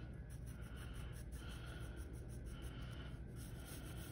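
Wooden pencil sketching on paper: a faint run of short scratchy strokes, each about half a second long.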